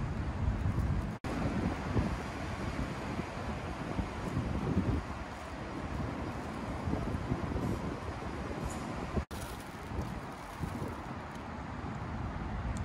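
Wind buffeting the microphone over a steady hum of city traffic. The sound cuts out abruptly twice, about a second in and again near the end.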